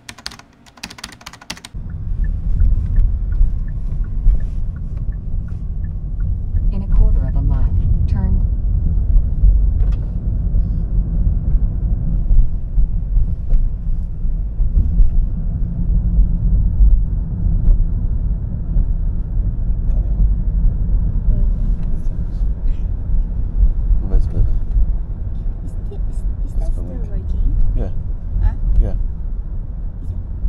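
Steady low rumble of a car driving, heard from inside the cabin, starting about two seconds in.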